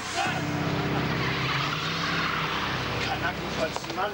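A car engine running steadily as the car drives along a cobbled street, with tyre noise, dying away near the end.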